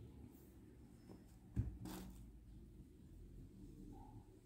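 Faint handling noise from crocheting with a hook and cotton thread. One sharp knock comes about one and a half seconds in, followed by a brief swish.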